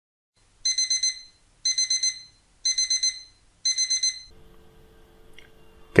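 Electronic alarm-clock-style beeping: four bursts of about four rapid high beeps each, one burst about every second. It is the sound of a quiz countdown timer running out.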